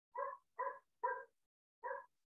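A dog barking four short times, the first three about half a second apart and the last after a slightly longer pause.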